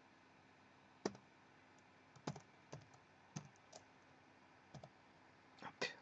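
A few scattered keystrokes on a computer keyboard, slow and irregular, about nine sharp clicks over quiet room tone, the first about a second in being the loudest.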